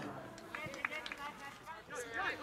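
Several voices shouting and calling out on a soccer pitch, with a single sharp knock a little under a second in.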